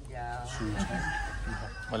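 A rooster crowing: one long call of a bit over a second that falls slightly in pitch, over a low steady hum.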